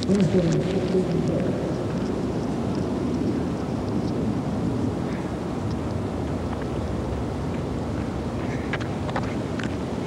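Steady low wind noise on the microphone outdoors, with a person's brief laugh near the start.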